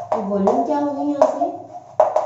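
A woman's voice speaking softly, with the sharp taps of chalk writing on a blackboard.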